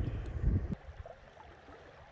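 Wind gusting on the microphone, a low rumble that cuts off suddenly under a second in, leaving a faint, steady background.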